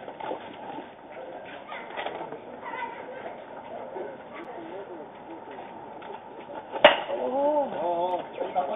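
A baseball bat strikes the ball once with a sharp hit near the end. Players shout right after it, over faint background chatter.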